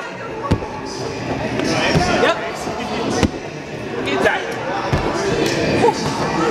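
About five sharp thuds at irregular intervals as bodies land and rebound on a trampoline-park tumble track. Voices chatter in a large echoing hall under the thuds.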